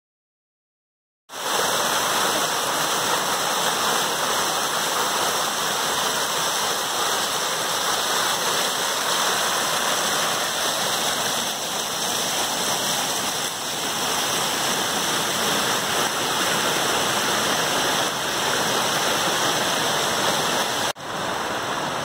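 Rushing water of a waterfall and its stream running over rocks, carrying a really high volume of water. A steady, even rush that starts about a second in and breaks off briefly near the end.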